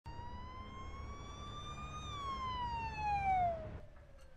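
A siren wailing over a low rumble. Its pitch climbs slowly for about two seconds, then falls, and it drops away suddenly near the end.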